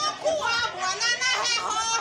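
A group of women's high, excited voices calling out and laughing over one another.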